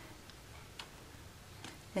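Quiet room tone with a few faint, brief clicks.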